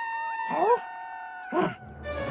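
Two short cartoon-dinosaur calls that rise in pitch and sound like a meow, the first about half a second in and the second near the end, over a held note of background music.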